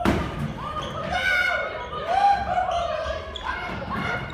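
A sharp thump right at the start, then wordless voice sounds: pitched calls and chatter that slide up and down in short phrases.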